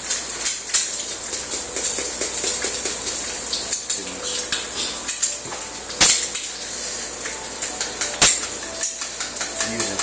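An egg frying in a pan gives a steady high sizzle, mixed with small clicks and knocks of spice containers being picked up and handled. Two sharp knocks stand out, about six and eight seconds in.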